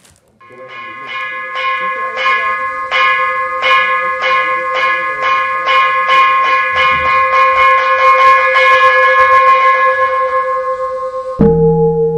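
A metal ritual bell struck over and over, the strokes speeding up from under two a second to a quick roll of about four a second while it keeps ringing. Near the end a larger, deeper bowl-shaped bell is struck once and rings on.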